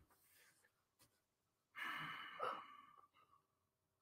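Near silence, broken about two seconds in by a single breathy sigh lasting under a second.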